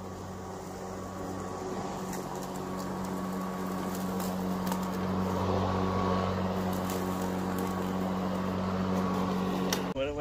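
Greenworks Pro 80V 21-inch battery push mower running under load, its motor and blade giving a steady hum that grows louder as it comes closer and stops abruptly near the end. The owner likens the sound to a muffled two-cycle Lawn-Boy.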